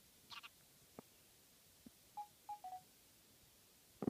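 Faint electronic beeps from a handheld console's Flipnote Studio drawing app as animation frames are stepped through: three short beeps a little past two seconds in, the last one slightly lower. Before them come a brief soft rustle and two faint clicks.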